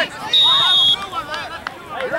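Referee's whistle: one steady, high-pitched blast of about half a second, under a second in, over shouting from spectators and players.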